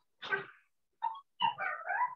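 A child's high-pitched voice reading Arabic syllables aloud over a video call, in three short bursts, the last one drawn out. The vowel is held too long where it should be short.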